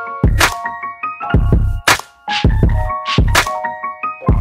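Background music: a beat of deep kick drums and sharp snare hits, about one snare every second and a half, under a stepping keyboard melody.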